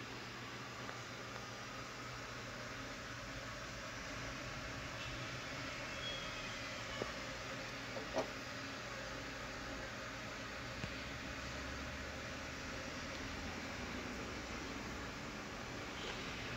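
Steady hiss and low hum of background noise, with a few small clicks about seven to eight seconds in as a hand handles a coaxial cable by its metal UHF connector.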